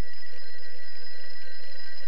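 Rotary-dial desk telephone's bell ringing: one steady, unbroken ring.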